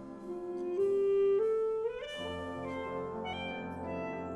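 Symphonic wind band playing held woodwind and brass notes, with a melody stepping upward; about halfway through, the lower instruments come in under it for a fuller, louder chord.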